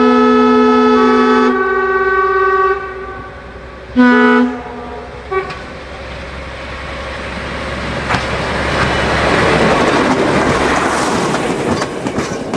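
Vintage railcar horn: a long multi-note blast that shifts pitch partway, a shorter blast about four seconds in, and a brief toot. After the toot comes the rumble of a train drawing near and passing close, growing louder, with wheels clacking over rail joints in the last few seconds.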